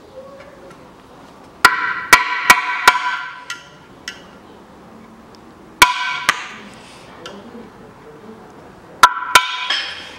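Hammer blows on a screwdriver driving the old front crankshaft oil seal out of an aluminium timing-chain cover, in three bursts of sharp knocks. Each blow leaves a brief metallic ring from the cover.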